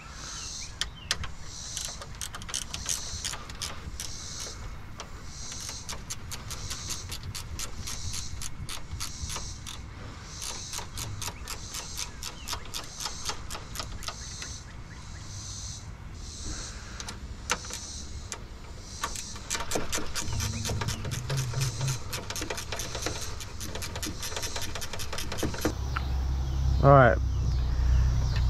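Runs of fast clicking from a hand ratchet working the fasteners on a car's front radiator support. A high, pulsing insect chirp sounds behind it about once a second.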